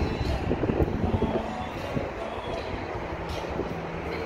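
Wind buffeting the microphone: an irregular low rumble, with a few louder gusts about a second in.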